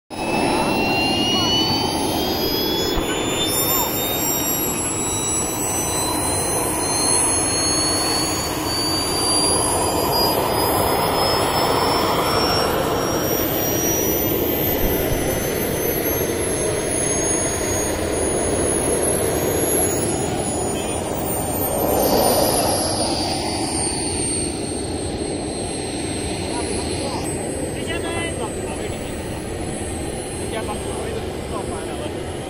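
SW190 model jet turbine of a 2.6 m RC L-39 running at taxi power: a steady jet rush with a whine that slowly climbs in pitch and a thin high whistle that wavers up and down. It swells briefly louder a little over two-thirds of the way through.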